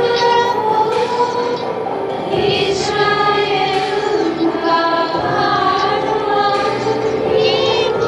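Three young women singing a song together into microphones, holding long notes that bend in pitch.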